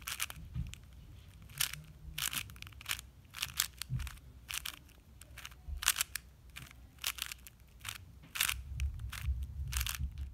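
Plastic 4x4 speed cube being turned through the OLL parity algorithm: a run of sharp clacks as the wide layers snap round, about two a second.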